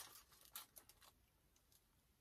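Faint biting and chewing of a sauced chicken wing: a few soft, crisp clicks in the first second, then near silence.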